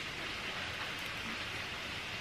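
Steady low hiss of background room noise with no distinct event.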